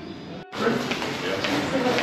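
Several people's voices talking indistinctly and overlapping, starting after a sudden cut about half a second in.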